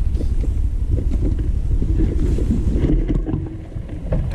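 Motorcycle riding over a rough, rocky dirt road: steady low engine rumble mixed with wind noise on the microphone and irregular knocks from the rough surface, dropping a little near the end.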